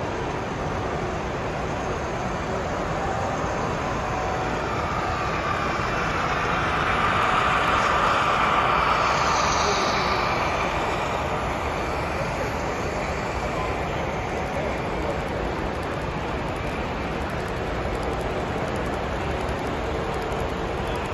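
A model train running along its track close by, with a steady rolling noise that grows louder for a few seconds in the middle as the diesel locomotives pass nearest. It sits over the constant background hubbub of a busy exhibition hall.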